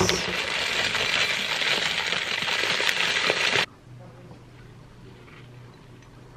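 Granola poured from a plastic bag into a china bowl: a steady rattle of many small clusters landing, which stops abruptly about three and a half seconds in. After that only a faint low hum remains.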